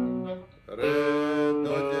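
Stratocaster electric guitar on its neck pickup, played through a Line 6 Helix, strumming chords on the lower strings. A ringing chord is cut off, then after a short gap a new chord is struck about a second in, changing to another just before the end.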